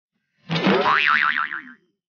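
A cartoon-style comic boing sound effect: a twanging tone that wobbles rapidly up and down in pitch. It starts about half a second in, lasts about a second and a half and fades out.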